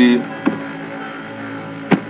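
Clicks from working a computer while a web address is entered: one click about half a second in and two louder, sharp clicks near the end, over a steady background hum.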